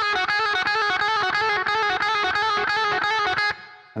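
Electric guitar playing a fast semitone hammer-on/pull-off lick over and over, the notes alternating rapidly in an even repeating pattern. It stops about three and a half seconds in and rings out briefly.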